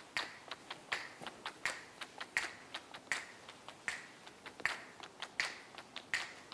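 Footsteps of several people walking on a hard floor: sharp shoe taps, the loudest set falling evenly at about three steps every two seconds, with fainter, irregular steps of others in between.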